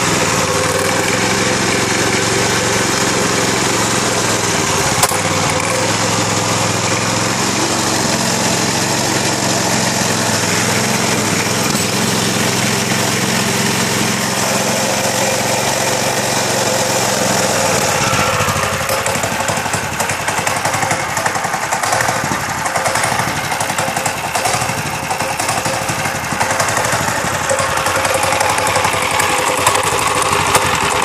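A Lifan 6.5 hp single-cylinder four-stroke engine running steadily, running well. About 18 seconds in, its steady note gives way to a rougher, more uneven sound.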